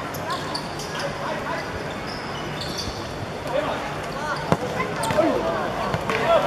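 A football being kicked on an artificial-turf pitch, with one sharp thud about four and a half seconds in among lighter touches, as players' shouts rise into cheering near the end as a goal goes in.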